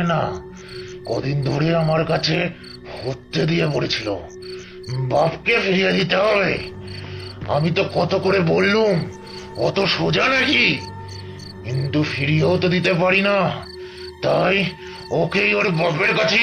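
Crickets chirping steadily, with a voice speaking over them in short phrases and a low held drone underneath.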